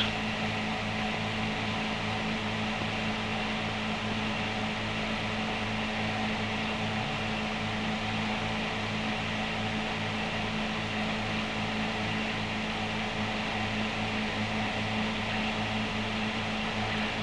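Steady low electrical hum with an even hiss over it, unchanging throughout, with no clicks, knocks or machine rhythm.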